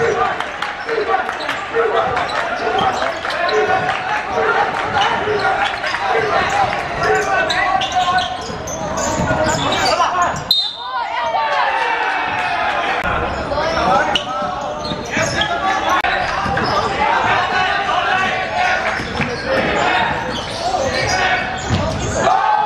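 A basketball being dribbled on a wooden gym floor, with a regular bounce about every half second or so for the first several seconds. Players and spectators are calling out around it, echoing in the large hall, and a break about halfway through cuts to another stretch of play.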